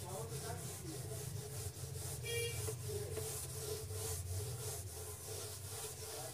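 Whiteboard duster rubbing back and forth across a whiteboard in repeated strokes as writing is wiped off, with one brief high squeak about two seconds in.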